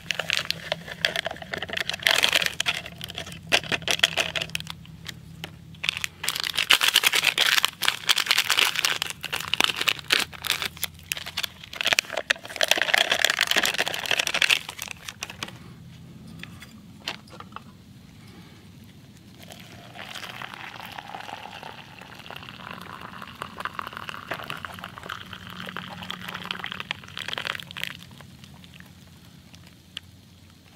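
Foil drink-mix packets crinkling as they are handled and torn open, and powder shaken into a plastic camp mug. This gives way to a quieter, steadier hiss in the second half, liquid being poured into the mug.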